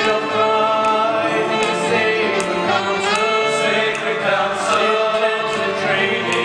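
Several male voices singing a musical-theatre song together, one lead voice among them.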